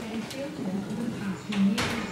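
Indistinct background voices, with one short sharp click near the end.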